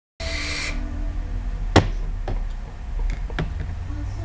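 A short hiss of air drawn through a box mod's dripping atomizer just after the start, then a sharp click and several lighter clicks and knocks as the mod is handled. Faint background music plays underneath.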